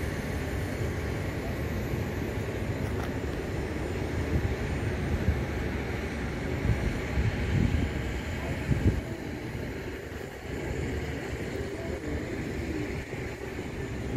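Outdoor exhibition ambience: a steady low rumble with faint voices of people in the distance.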